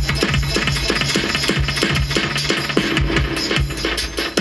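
A reggae 12-inch vinyl record playing on a turntable: an instrumental stretch with a steady drum beat over a deep bass line, without singing.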